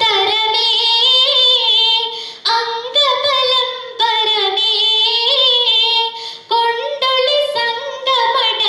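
A girl singing a Mappilappattu (Mappila song) solo into a microphone, in long phrases with ornamented, wavering runs in the melody. The phrases break briefly a few times for breath.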